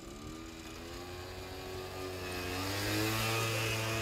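A motor engine growing steadily louder as it approaches, its pitch rising slightly and then holding steady.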